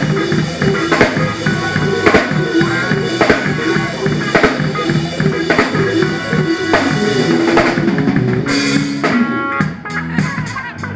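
Live rock band playing loud through a PA: electric guitars and bass guitar over a drum kit. There is a hard drum accent about once a second, and cymbal crashes near the end.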